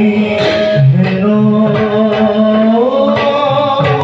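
Live Bhaona devotional music: male voices singing long held notes, the melody climbing in pitch about three seconds in, with several sharp percussion strokes.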